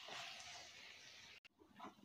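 Faint sizzle of spiced chicken pieces frying in a pan, stopping abruptly about one and a half seconds in.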